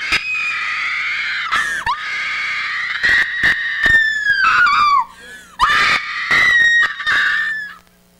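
A woman screaming at full voice: one long, high-pitched scream held for about five seconds, breaking briefly early on and dropping in pitch as it ends, then after a short breath a second scream of about two seconds that cuts off just before the end.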